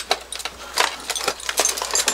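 Clinking and rattling of the many small metal and plastic trinkets hung on a plate carrier as it is pulled on over the head and shifted into place, a run of irregular clicks and knocks.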